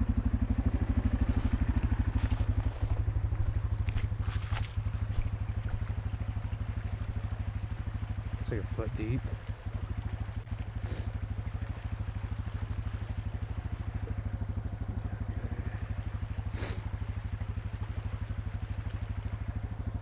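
Yamaha ATV's single-cylinder four-stroke engine idling steadily with an even low putter.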